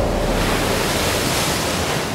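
Ocean surf: waves breaking and washing in a steady, dense rush of noise.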